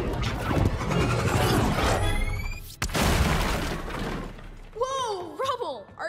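Animated-film sound effects of a fireball blast crashing and shattering, a long smash with debris breaking apart and a sharp crack about three seconds in. Near the end a character's voice cries out.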